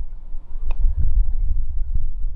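Low rumble of wind buffeting the microphone, with one short click of a putter striking a golf ball about two-thirds of a second in.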